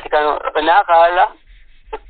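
Speech only: a person talking for about a second and a half, a pause, then talking again near the end.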